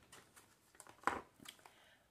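Faint handling noises: a few soft clicks and rustles, with one short, slightly louder sound about a second in.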